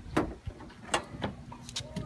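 Car hood being opened: several sharp clicks and knocks as the hood's safety latch is released and the hood is lifted.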